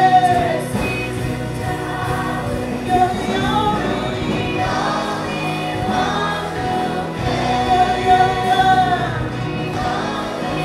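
Live worship band and singers: a female lead voice with backing vocals, electric guitar and drums, with the congregation singing along, heard from a microphone among the crowd.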